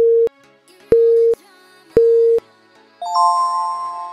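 Workout interval timer counting down: three short, identical beeps about a second apart, then a higher, longer chime about three seconds in that marks the end of the interval.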